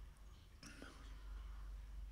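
Quiet room with a steady low hum, and one brief soft whisper-like breath a little over half a second in.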